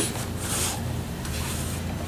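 Hands kneading and pressing a crumbly flour, sugar and vegetable-shortening dough on a flour-dusted wooden tabletop: soft rubbing and scraping, with brief brushing swipes across the boards about a quarter of the way in and near the end.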